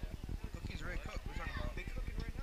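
Indistinct voices of people calling out on a football field, over a rapid low flutter.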